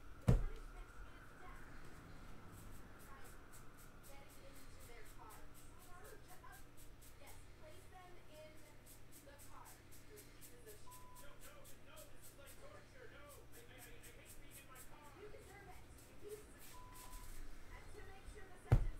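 Trading cards being flipped through one by one in the hand, a run of faint quick ticks at several a second. A single sharp knock about a third of a second in is the loudest sound.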